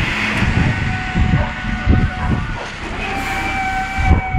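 TLF 20/40 fire engine's diesel engine running as the truck pulls out of its station bay. Two long steady high squealing tones ring out over the engine, one about a second in and another near the end.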